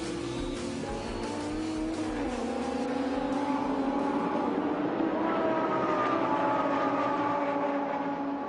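Lamborghini Gallardo Super Trofeo race car's V10 engine: its pitch drops about two seconds in, then climbs as it accelerates hard and grows louder, easing off slightly near the end.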